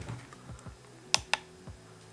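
Two sharp clicks about a fifth of a second apart from the small push button on a USB charger power-bank module, pressed to wake its LED display and show the battery percentage.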